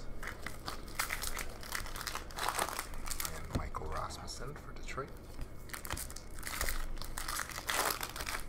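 Trading cards handled in a stack: cards slid and flicked one behind another, giving a run of short papery scrapes and crinkles.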